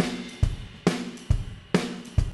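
Two software drum kits, Logic's swing drummer and Toontrack EZdrummer, playing back together: kick, snare, hi-hat and cymbal hitting on a steady beat of a little over two strokes a second.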